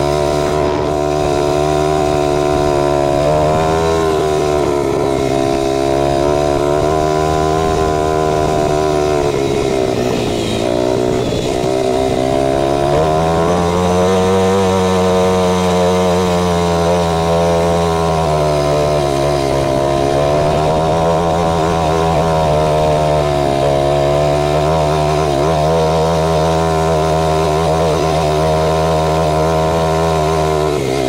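Kawasaki KLX300R dirt bike's single-cylinder four-stroke engine running while ridden, its pitch rising and falling with the throttle, with a dip about ten seconds in before it picks up again.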